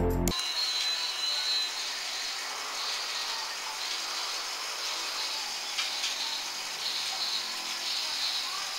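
Rail King battery-powered toy train running round its plastic oval track: a steady whirring and rattling from the small motor, gears and wheels. A snatch of music cuts off just at the start.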